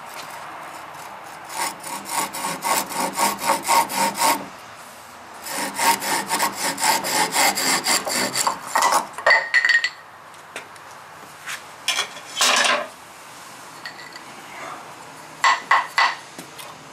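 Old keyhole saw cutting through a dry wooden stick in two runs of quick rasping strokes, about four or five a second, with a short pause between. A few single strokes and knocks follow later as the cut is finished.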